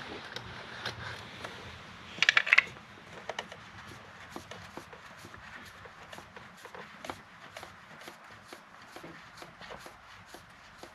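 Oil filter housing cap being unscrewed by hand, with faint small clicks and rubbing as it turns on its threads. About two seconds in, a short cluster of louder metallic clatter as the band-type oil filter wrench is put down on the engine.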